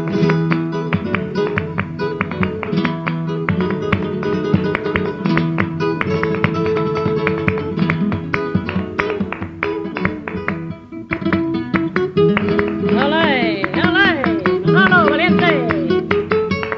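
Flamenco guitar playing a bulerías introduction, quick plucked runs and strummed chords. Near the end a cantaora's voice comes in with a wavering, gliding sung cry over the guitar.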